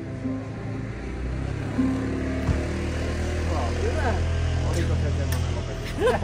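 A low, steady engine drone swells in about two seconds in and holds, with a few soft acoustic-guitar notes and voices over it.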